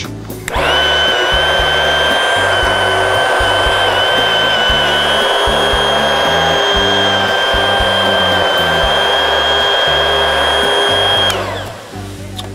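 Large commercial stick (immersion) blender running at full speed as it purées a tomato and vegetable-juice gazpacho base: a loud, steady high whine over a churning rush. It starts about half a second in and shuts off shortly before the end, winding down.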